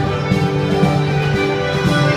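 Contra dance music from a string band, fiddle and guitar playing a tune with many held notes.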